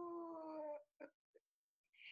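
A man's drawn-out, wordless vocal sound of embarrassed hesitation, falling slightly in pitch for under a second, followed by a couple of faint mouth clicks.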